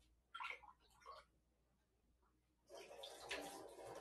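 Near silence: room tone, with two faint short sounds about half a second and a second in, and a faint hiss that builds over the last second or so.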